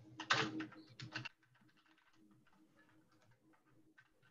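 Typing on a computer keyboard: a quick run of loud keystrokes in the first second or so, then fainter, scattered key taps.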